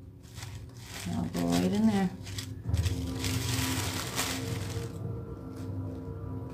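Tissue paper crinkling and rustling as it is handled and gathered by hand, loudest about three to five seconds in. A short hummed or sung voice sound comes about a second in.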